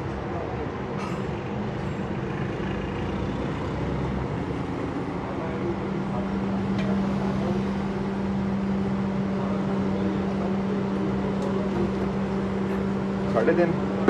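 CVT fluid pouring from a metal can into a plastic funnel, over a steady low hum that grows stronger about five seconds in. A man's voice speaks briefly near the end.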